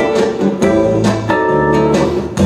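Chromatic button accordion playing an instrumental passage: held chords and melody notes changing about every half second over a steady bass line.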